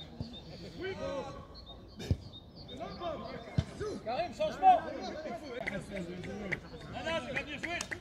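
Footballers' shouts and calls from across the pitch, several short voices overlapping, with two sharp thuds about two seconds and three and a half seconds in.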